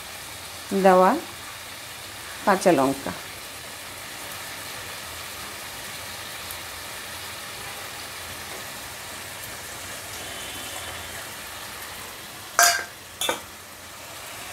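Steady sizzling of food frying in a kadai on a gas burner, with two sharp clicks near the end.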